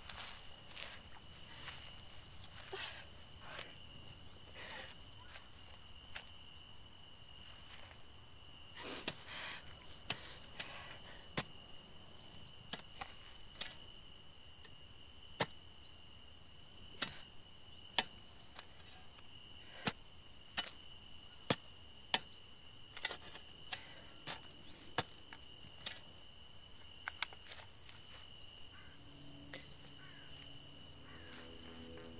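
A shovel digging into hard ground: softer scrapes at first, then sharp strikes about once a second from about ten seconds in. A steady chirring of crickets runs underneath.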